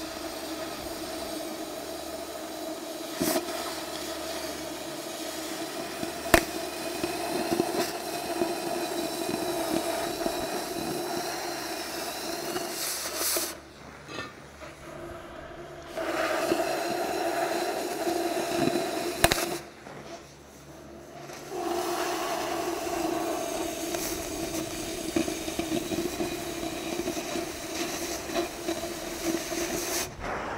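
Oxy-fuel cutting torch cutting through thick-walled steel pipe: a steady hissing roar from the cutting jet. It stops twice near the middle for about two seconds each as the cut pauses, and a few sharp pops sound during the cut.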